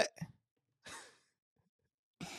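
A man's short, soft exhale into a close microphone about a second in; otherwise near silence.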